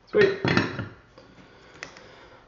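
Short clatter as a soldering iron is set back into its metal-coil bench stand, then a single light click near the end as the circuit board is handled.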